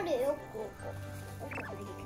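Young children's high, squeaky voices, loudest right at the start and again briefly about one and a half seconds in, over steady background music.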